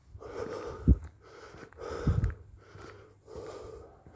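A man breathing close to a phone microphone, three breaths in about four seconds, with two short low thumps in between.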